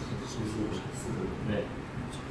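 Quiet, indistinct male speech in a small room, a few short bits of talk with pauses between.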